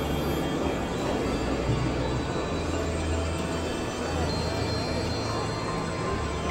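Experimental electronic synthesizer music: a dense, noisy drone texture with thin steady high tones running through it, over low bass tones that swell on and off every half second to a second.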